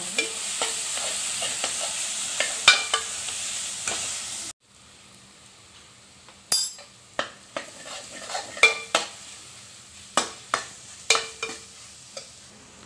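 Vegetables sizzling in a metal kadai while a perforated metal spatula stirs them, knocking and scraping against the pan. The sizzle cuts off abruptly about four and a half seconds in. After that the spatula's scrapes and knocks on the pan come every half second or so over a quieter background.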